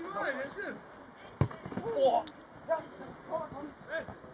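A football kicked once: a single sharp thud about a second and a half in, among voices calling out on the pitch.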